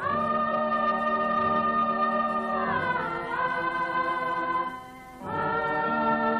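Background music: choir-like voices holding long notes. The music moves to a new chord about three seconds in and breaks off briefly near five seconds before resuming.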